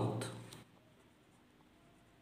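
Faint scratching of a pen writing on paper, after a spoken word trails off in the first half-second.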